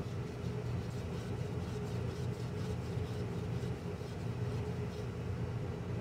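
A steady low mechanical hum with a faint higher tone above it, even throughout.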